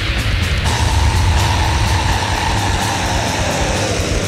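Death metal recording, an instrumental passage with dense, heavy bass and regular cymbal hits. A high held note comes in under a second in and slides down in pitch near the end.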